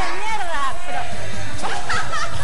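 Several voices talking and exclaiming at once over background music.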